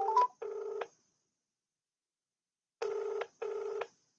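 Telephone ringback tone on an outgoing call: a double ring, two short buzzes close together, repeating about every three seconds, heard twice. A short three-note rising beep sounds over the first ring.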